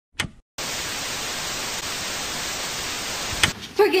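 Steady static hiss lasting about three seconds, set off by a short click just after the start and ending with another click about three and a half seconds in.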